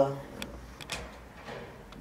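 A voice trails off, then a few light clicks or knocks sound in a quiet room.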